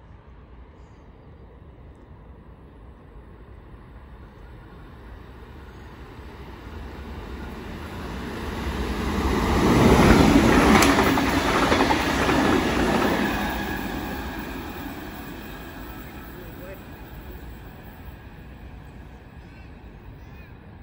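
Sydney Trains double-deck electric passenger train passing close by at speed: the rumble and rattle of its wheels on the rails builds over several seconds, peaks about ten seconds in, then fades away.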